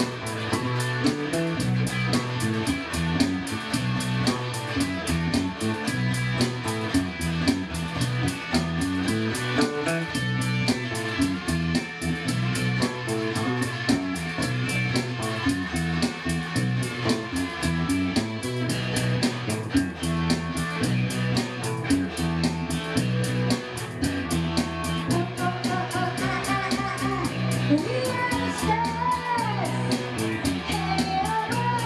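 Electric bass and electric guitar playing together in a live jam, with a steady rhythmic bass line under the guitar. Near the end, higher sliding notes come in.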